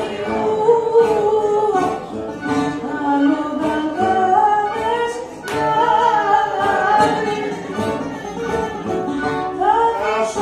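Live rebetiko song: a singer's voice over accordion and guitar accompaniment.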